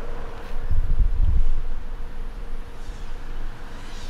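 Steady buzz of a 6S FPV quadcopter's motors flying at a distance, with a louder low rumble about a second in.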